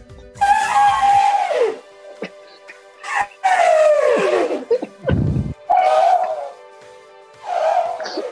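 A man imitating an elephant's trumpeting with his voice, hand over his mouth: four long calls, each sliding down in pitch. There is a short low thump about five seconds in.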